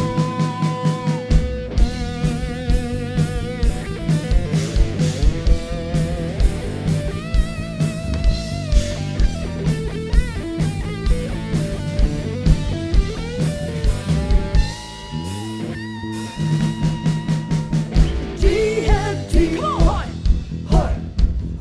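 Live rock band playing: a steady drum-kit beat under electric guitars and bass, with a sung vocal line. About three quarters of the way through, the drums briefly drop out, then the full band comes back in.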